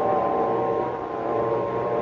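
Radio-receiver sound effect: a steady carrier-wave hum of several held tones over hiss, the receiver still tuned in just after the transmission has ended.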